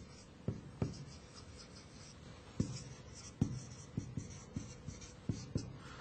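Marker writing on a whiteboard: short taps and squeaky scratches as each stroke of the words goes down, sparser for a second or so after the start, then a quick run of taps toward the end.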